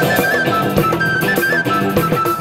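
Live Assamese Bihu band playing an instrumental passage: a bamboo flute holds a high, lightly ornamented melody over a steady drum rhythm.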